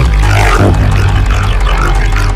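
Drum and bass music: a loud, distorted synthesizer bass growl over deep sub-bass.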